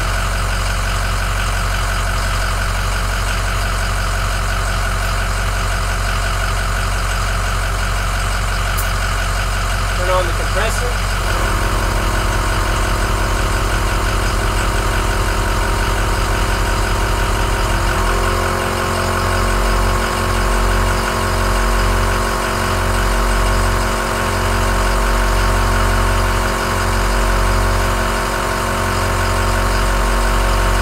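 A pickup truck engine idles steadily. About eleven seconds in, a Smittybilt 2781 12-volt air compressor starts running with a steady hum, and its note drops at about eighteen seconds as it begins pumping into the dually's front tire, which is being aired up from 65 toward 80 PSI. From then on the sound throbs unevenly under the load.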